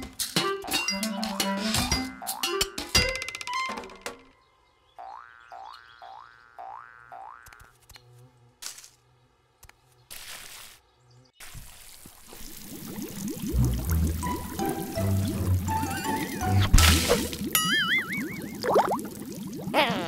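Cartoon sound effects over light children's music: a quick run of about five springy, rising boings, a few sharp clicks, then a stretch of water pouring and splashing from a watering can or hose, with a wobbling boing near the end.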